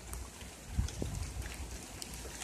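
Light rain falling, with a low rumble of wind on the microphone and a couple of dull handling thumps about a second in.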